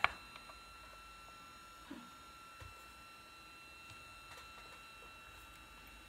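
Quiet workshop room tone with a faint steady high-pitched whine, and a single small click about two seconds in as pen-press parts are handled.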